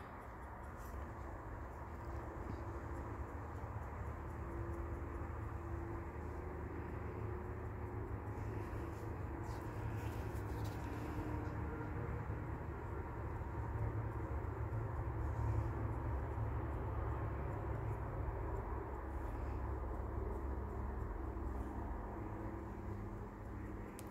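Distant highway traffic heard through an open window: a steady low rumble of trucks, swelling a little about halfway through.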